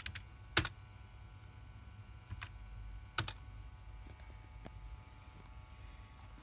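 Four separate keystrokes on a computer keyboard, a second or so apart, the first and third the sharpest, over a low steady hum.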